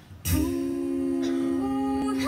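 An a cappella vocal group enters together about a third of a second in, holding a sustained chord in close harmony without instruments; one part moves to a new note near the end.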